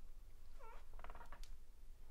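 Interior door's hinges squeaking as the door swings open: a short squeak that dips and rises in pitch about half a second in, then a second, steadier squeak about a second in, with a faint click after it.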